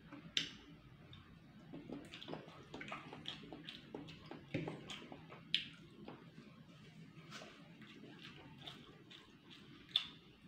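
Close eating sounds of a person eating rice and boiled egg by hand: chewing and lip smacks, heard as many small clicks, with a few sharper clicks, the loudest about half a second in, another a little past halfway, and one at the very end.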